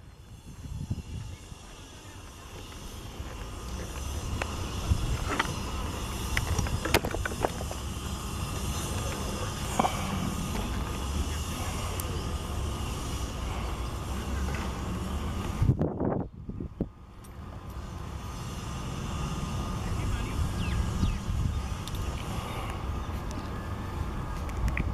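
Outdoor background noise: a steady low rumble with faint distant voices and a few sharp clicks, dropping out briefly about sixteen seconds in.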